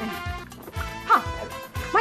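Background film music with a dog yipping twice: short yelps that rise and fall in pitch, about a second in and again near the end.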